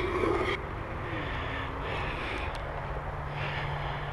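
Honeybees buzzing faintly around open hives as a steady low hum, with one bee passing close about a second in, its buzz dropping in pitch and then holding briefly. A short rustle comes at the start.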